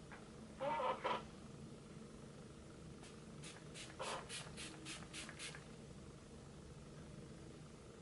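A short vocal sound about a second in, then a pump-mist bottle of Iconic London Prep-Set-Glow setting spray spritzed about nine times in quick succession over some two and a half seconds, each spritz a short hiss.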